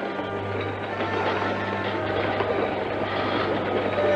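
Train running in the distance as a steady low rumble, getting slightly louder toward the end, with background music.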